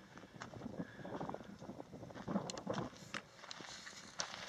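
Faint footsteps crunching on a rocky, gravelly desert trail, with scattered small clicks and scrapes at an uneven pace.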